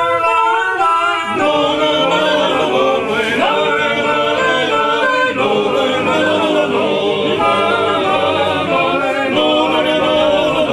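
Genoese trallalero: a group of men singing a cappella in close polyphony with sustained held chords. A new phrase opens with the upper voices alone, and the low voices come in about a second in.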